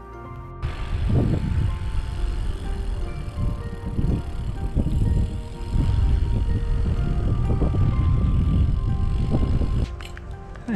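Wind buffeting the microphone: a loud, irregular low rumble that swells and drops in gusts, over quiet background music.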